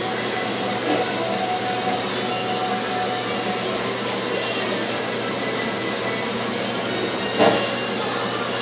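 Steady rushing background noise with a low, even hum, unchanging throughout.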